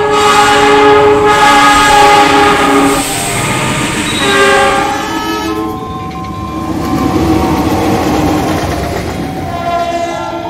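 Diesel locomotive air horns sounding in long chord blasts, the pitch of the chord shifting a few times over the first half, over the rumble of a passing train. After about five seconds the horn gives way to quieter track rumble with a fainter horn tone.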